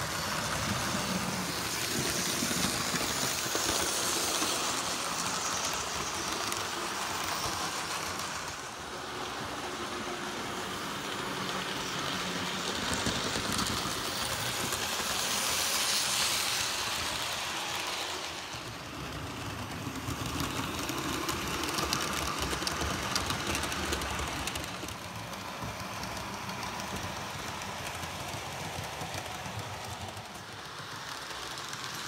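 Electric model trains running on the layout's track, their motors and wheels on the rails making a steady running noise that swells each time a train passes close, about three seconds in and again around sixteen seconds in, when the Flying Scotsman model and its coaches go by.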